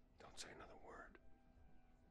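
A man's faint, hushed voice, close to a whisper, speaking one short line of about a second.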